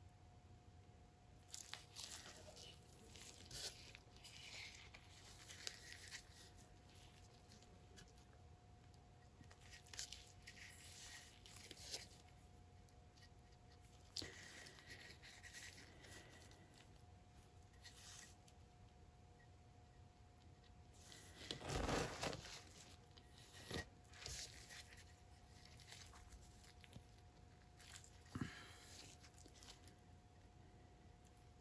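Faint, scattered rustling and scraping as gloved fingers wipe wet acrylic paint drips off the edges of a poured tile. One louder rustle comes about two-thirds of the way through.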